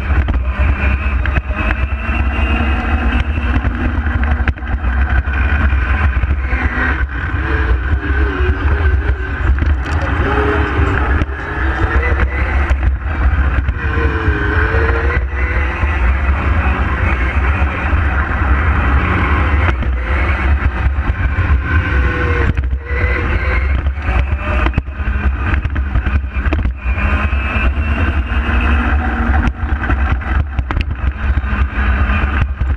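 Onboard sound of a small electric race kart at speed: the motor and drivetrain whine rises and falls in pitch as it speeds up and slows for the corners, over a heavy rumble of wind and vibration on the microphone.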